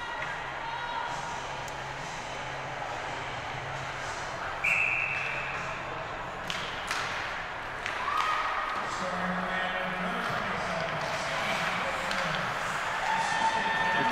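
Ice hockey rink ambience: a steady murmur of spectators' and players' voices, with scattered knocks and clicks of sticks and puck on the ice. A short, shrill whistle sounds about five seconds in.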